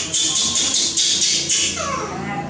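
Baby monkey crying for its milk: a rapid run of high-pitched squeals, about four a second, trailing into a wavering whimper near the end.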